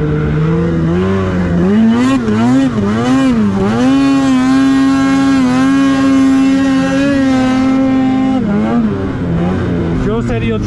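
Polaris 850 two-stroke snowmobile engine heard from on board, revving up and down for a few seconds, then held at high revs for about four seconds before easing off near the end.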